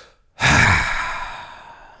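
A man's long sigh of relief, a deliberate exhale that starts about half a second in, loud at first and trailing off over about a second and a half.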